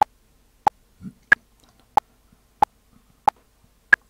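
Audacity's Rhythm Track generator playing a 'ping' metronome click at about 92 beats per minute: seven short pings about two-thirds of a second apart, with every fourth one higher in pitch, marking the first beat of each bar.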